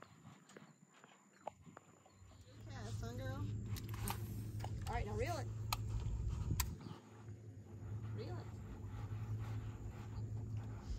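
A steady low electric hum from the boat's bow-mounted trolling motor starts about two and a half seconds in and runs on, dipping briefly near the seven-second mark. Short bits of a small child's voice and a few light clicks come over it.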